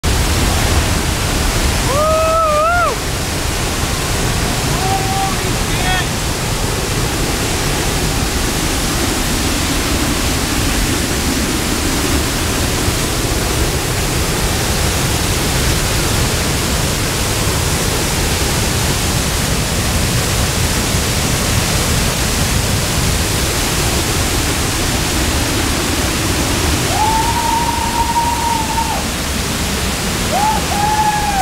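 Tahquamenon Falls roaring steadily as it pours over the ledge, heard close up from behind the falling water. A person's voice calls out briefly about two seconds in and holds a longer call near the end.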